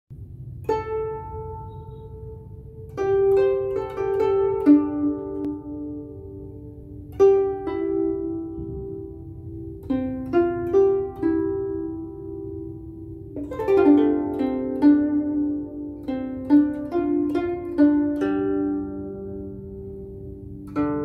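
Guzheng played solo: a slow melody of plucked notes in short phrases, each note ringing on and fading, with a busier run of notes near the end.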